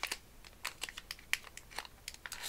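Plastic wrapper of a trading-card pack crinkling and crackling in the hands as it is pulled open, in a string of irregular sharp crackles.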